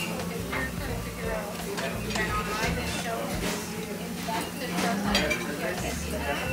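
Restaurant dining-room ambience: background talk from other diners, with dishes and cutlery clinking now and then.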